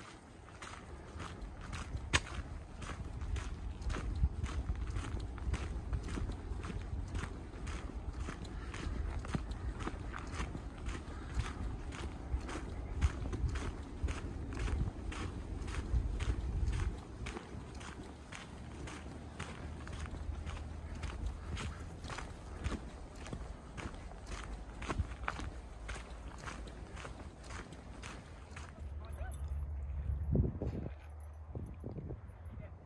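Footsteps on a dirt trail through an aspen grove, at a steady walking pace of about two steps a second, over a low rumble that eases a little past halfway.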